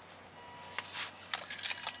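Low background hiss, then from about a second in a quick, irregular run of light clicks and rustles, like something small being handled.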